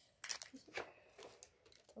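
Double-sided tape being torn off and handled, a few short crinkling, tearing crackles in the first second, then fainter fiddling with the tape.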